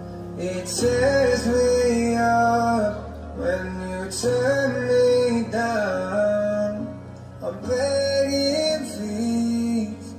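Recorded music: a slow song with a held, gliding melody over guitar, no words clearly sung.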